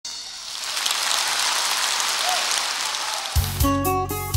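Audience applause, a dense steady clatter of clapping, and a little over three seconds in the band starts the song's intro with a deep bass and a run of short plucked notes.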